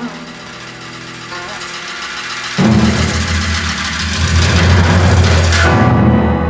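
Orchestral film score: quiet held notes, then about two and a half seconds in a sudden loud swell, dense and full from deep bass to the top. The swell falls back just before the end.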